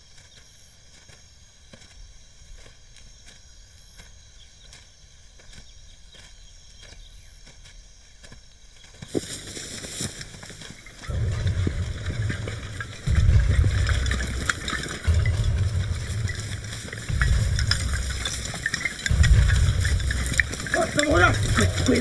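Soldiers' footsteps rustling through tall grass and brush: faint and scattered at first, then loud and continuous from about nine seconds in. Under it a deep throb repeats about every two seconds.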